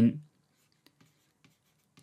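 Faint ticks and light scratching of a stylus writing on a tablet, a few small taps about a second in; a man's voice trails off at the very start.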